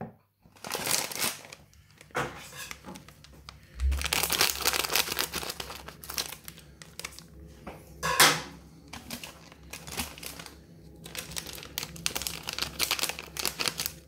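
Foil snack packet crinkling and tearing as it is handled and opened, in uneven crackly bursts, loudest about eight seconds in.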